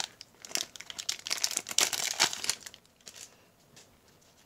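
Clear plastic wrap around a stack of trading cards in rigid plastic holders crinkling as hands pull it away: a quick run of crackles for about two and a half seconds, then a few faint ones near the end.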